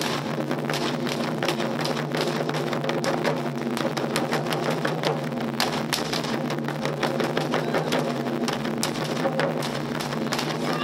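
Taiko ensemble: several barrel-shaped taiko drums (nagado-daiko) struck together with wooden bachi sticks in a fast, driving rhythm.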